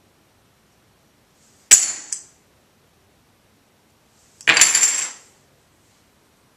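Poker chips clattering onto a felt-less table twice: a short sharp clack about two seconds in, then a longer clatter of several chips about three seconds later, as a bet is tossed into the pot.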